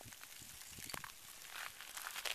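Faint, scattered clicks and crackles of Kilauea pahoehoe lava, its cooling crust cracking as the molten toe pushes the solid rock along.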